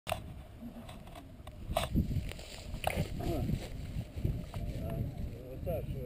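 Wind rumbling on a close action-camera microphone, with several sharp knocks and clicks from handling of the camera and harness in the first three seconds, and a few short spoken words.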